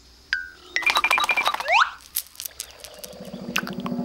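Cartoon sound effects: a short ping, then a quick run of high notes ending in a rising glide, a few sharp clicks, and a low pulsing hum that starts near the end.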